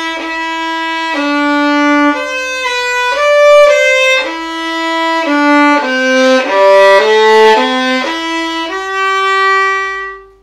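Solo violin playing a slow legato melody, the bow kept on the string so the notes join without gaps. It grows louder through the middle of the phrase and ends on a long held note.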